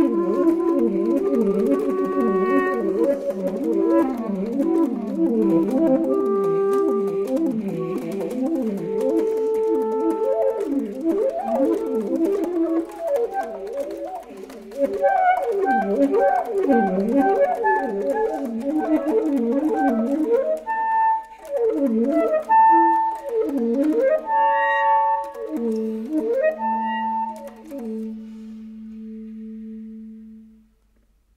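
Saxophone and clarinet duo playing fast, interlocking up-and-down runs. Near the end the music thins to long held low notes and grows quieter.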